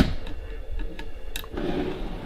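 A white sideboard drawer being handled and pulled open: a sharp click at the start, another light click a little past the middle, then a soft sliding noise near the end.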